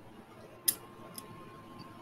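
Quiet room background with one short, sharp click about two-thirds of a second in and a fainter tick about half a second later.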